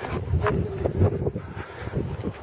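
Wind rumbling on a handheld camera's microphone while the camera operator walks, with a few soft handling or footstep thumps.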